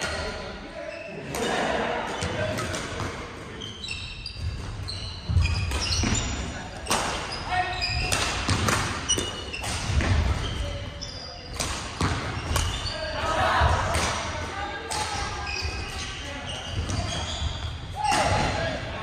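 Badminton play in an echoing gymnasium: racket strikes on shuttlecocks, many short high squeaks of court shoes on the wooden floor, and dull thuds of footfalls, with players' voices.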